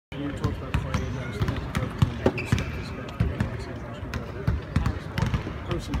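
Basketballs bouncing on a court, many quick thumps several times a second, under a murmur of background voices.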